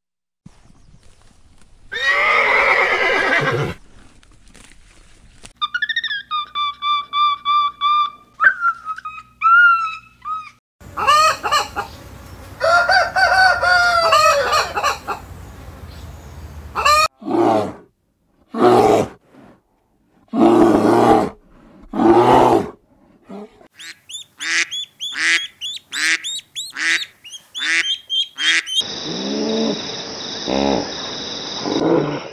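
A string of separate farm-animal calls: first a sheep bleating, then chickens clucking and calling in short repeated series.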